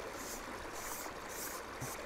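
Faint, steady rush of flowing river water.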